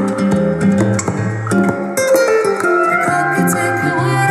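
Guitar-led song with plucked notes playing through a pair of Callas two-way speakers.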